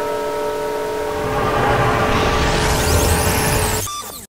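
Harsh static noise hissing over a held drone of steady tones. The static swells louder with a low rumble from about a second in. Near the end the drone stops and everything cuts off abruptly.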